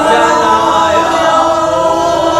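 Unaccompanied singing of a Hindi song line, drawn out in long held notes that bend slowly in pitch.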